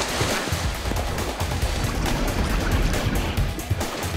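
Background music over water splashing and churning as a netted manatee thrashes in the shallows, the splashing strongest in the first second.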